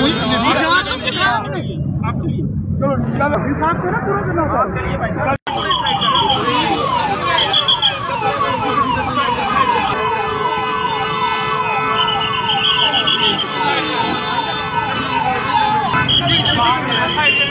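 Crowd voices, then after an abrupt cut about five seconds in, a siren sounding in rapid repeated falling sweeps, about two a second, with a steady lower tone joining midway.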